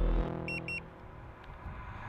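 Two short, high electronic beeps in quick succession about half a second in, from a Boosted Mini S electric skateboard's controls as the riding mode is switched up to a faster setting. They sound over a faint steady hum, with a brief low rumble at the very start.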